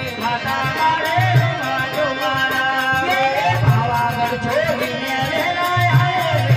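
Live Gujarati folk bhajan accompaniment: an Indian banjo (bulbul tarang) playing a sliding, wavering melody over tabla, with manjira hand cymbals ticking a fast steady beat. A deep drum stroke falls about every two and a half seconds.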